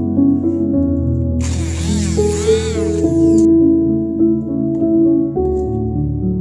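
Piano music plays throughout. About a second and a half in, a Recco stick blender runs for about two seconds in a stainless steel bowl of kiwi, a whine that rises and falls in pitch, like a machine from the dentist.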